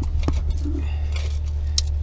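Metal band-type oil filter wrench clinking against a spin-on oil filter as it is fitted and snugged on: a few sharp clicks over a steady low hum.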